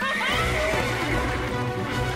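A horse whinnying at the very start as it bolts off with the cart, over steady background music.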